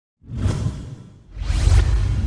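Two whoosh sound effects for an animated title. The first rises about a quarter second in and fades. The second swells louder about a second and a half in, with a deep low rumble, and runs on.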